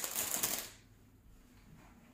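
Sterile surgical glove wrapper rustling and crackling with small clicks as it is opened out, lasting under a second; then only faint room tone.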